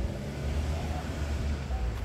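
Quiet outdoor street ambience in a small town square: a steady low rumble.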